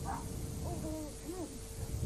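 Faint voices at a front door, a few short soft syllables, under a steady low hum from the recording.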